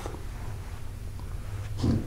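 A pause with a low, steady room hum, then a man's short "hmm" near the end.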